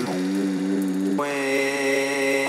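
Tech house DJ mix in a drumless breakdown: held, sustained chords with the bass and kick filtered out. The chord changes about a second in.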